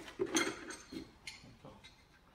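Light clicks and rustles of small accessories and cables being handled and packed into a box, a few separate knocks, the strongest in the first half second.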